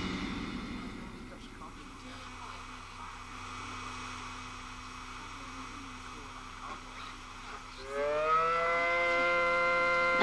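Music fades away into a quiet low hum. About eight seconds in, a civil defense siren winds up, rising in pitch, then holds one steady wailing tone: the all-clear signal after the tornado.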